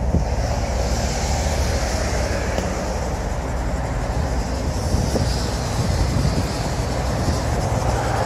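Steady low rumble with an even hiss above it, unbroken throughout.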